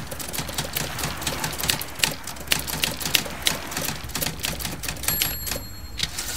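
Typewriter keys clacking in a rapid, irregular run, with a high bell-like ring about five seconds in.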